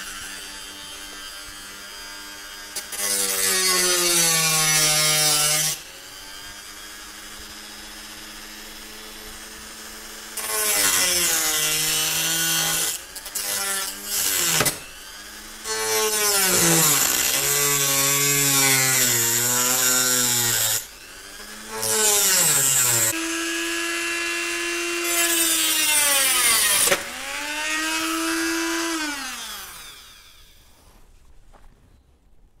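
Dremel 300 rotary tool running at its lowest speed with a cutoff wheel, cutting through brass sheet in repeated passes. Each pass adds a loud grinding hiss and drags the motor's whine down in pitch, and the pitch rises back when the wheel comes off the metal. Near the end the thin cutoff disc breaks and the sound drops away.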